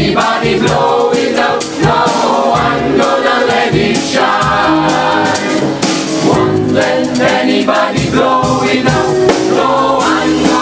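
Gospel choir of mixed men's and women's voices singing together.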